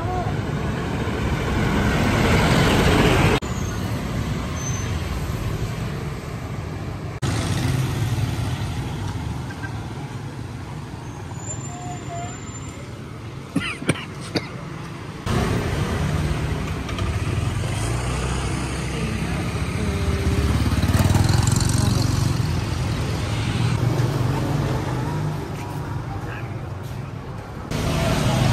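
Busy town street ambience: motor scooter and traffic noise passing, with voices in the background. The sound changes abruptly a few times, and a couple of sharp clicks come about halfway through.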